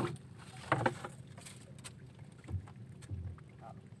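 Handling noise aboard a small wooden outrigger boat as a net-covered shrimp trap is hauled in: a few light knocks of the trap frame and net against the hull, then two short low thumps in the second half.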